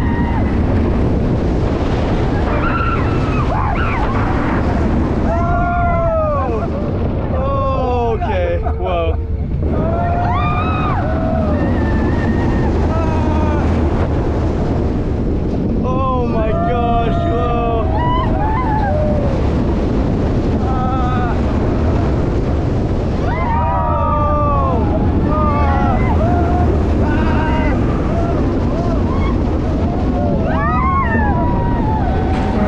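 Heavy wind rushing over the microphone and the rumble of a steel roller coaster train running at speed through drops, inversions and turns. Riders yell and scream over it in several bursts.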